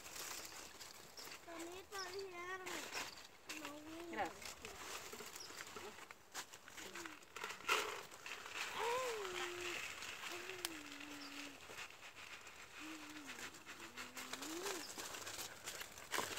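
Faint, indistinct voices speaking in short phrases, with dry sorghum leaves rustling and crackling as someone moves and bends among the stalks.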